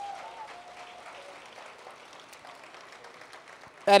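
Audience applause, a crowd clapping, fairly faint and slowly dying down; a man's voice comes in at the very end.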